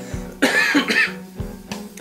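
A man coughing about half a second in, for about half a second, from a lungful of cannabis smoke just inhaled from a gravity bong. Background guitar music plays under it.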